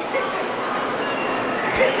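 Busy hall chatter, then near the end a single sharp slap of an open hand striking a man's face, met with a laugh.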